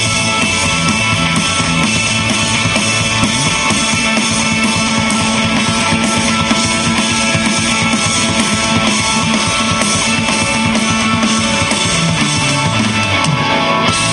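Live rock band playing an instrumental passage: electric guitars over a drum kit with a steady beat, loud throughout.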